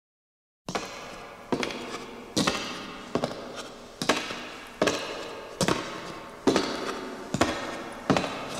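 Heavy drum hits in a slow, steady beat, one about every 0.8 seconds, each ringing out with reverb; they start suddenly under a second in.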